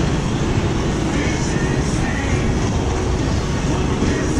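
Steady wind rumble on the microphone, with music faintly underneath.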